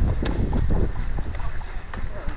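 Wind rumbling on the microphone, with a handful of light knocks and rustles scattered through it.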